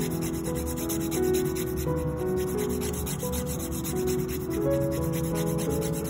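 Diamond hand nail file rasping back and forth across the edge of a natural fingernail in rapid repeated strokes, shaping the nail. Soft background music with held notes plays underneath.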